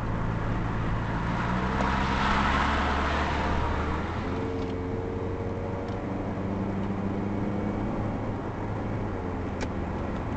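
Engine hum and tyre and road noise of a car driving onto a highway, heard from inside the cabin through a dashcam microphone. A louder rush of noise swells about two to three seconds in, and there is a short click near the end.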